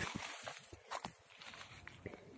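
A few faint footsteps crunching on wood-chip mulch, about a second apart.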